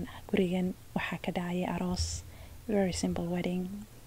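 Speech only: a woman talking in Somali in several short phrases.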